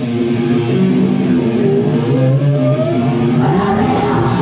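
Live punk band's distorted electric guitar and bass holding notes with the drums dropped out, while one guitar note slides steadily upward in pitch through the second half.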